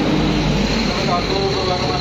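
Indistinct voices of several people over a loud, steady mechanical hum with a thin high whine, the voices more noticeable in the second half.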